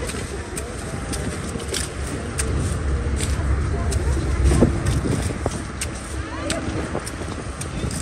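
Crisp snaps and crunches of celery stalks being cut at the root with a field knife, a sharp click every half second or so, over a steady low outdoor rumble.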